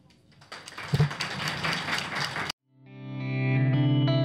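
Brief applause after the closing thanks, cut off abruptly about two and a half seconds in; after a moment of silence, instrumental closing music fades in with held notes.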